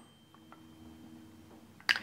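Quiet room tone with a faint low hum and a few faint small ticks, ending in a short sharp click just before the end.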